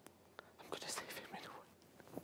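Faint whispering: a short run of breathy, unvoiced syllables about a second in.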